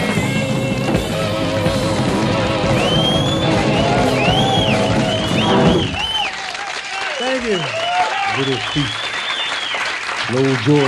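A live rock band with electric guitar and drums plays the end of a song, stopping about six seconds in. Then a small studio audience cheers, whoops and whistles over applause. Shrill whistles begin over the last bars.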